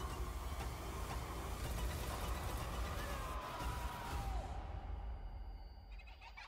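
Horror film trailer soundtrack: a deep low drone under a wavering, gliding high tone, the upper part fading away about four seconds in.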